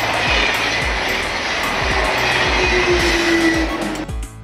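A passenger train passing at speed: a loud rushing rolling noise that starts abruptly, with a whine that falls slightly in pitch near the end. Background music with a steady beat plays under it.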